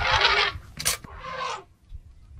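African elephant trumpeting in two harsh, rasping blasts while charging, the first the loudest and the second about a second in, with a sharp click between them.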